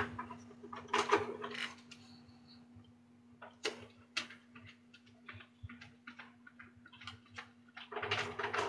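Faint scattered clicks and light knocks, a dozen or so short ones spread through the quiet, over a steady low hum.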